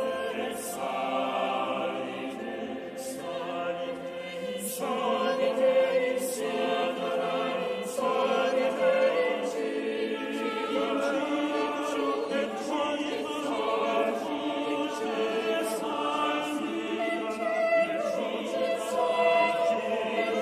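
Mixed-voice church choir singing in several parts, holding long sustained notes with soft consonant hisses between phrases.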